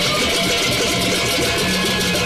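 Gendang beleq ensemble playing: a dense, continuous clash of cemprang hand cymbals over a steady low held tone and a wavering melody.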